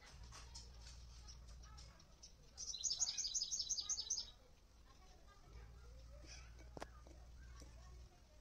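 A songbird singing a quick run of high notes, about eight a second, for about a second and a half near the middle, with fainter chirps around it. There is a low rumble before and after the song, and one sharp click near the end.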